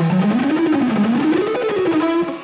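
Electric guitar playing a quick run of single picked notes, economy picked: the line climbs, dips back, climbs higher and then falls again.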